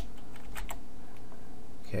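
Computer keyboard being typed on: a few scattered keystrokes over a steady low background hum.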